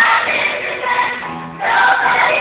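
A group of women singing a musical theatre number together with accompaniment. The voices drop out briefly just past a second in, leaving low accompaniment notes, then come back in.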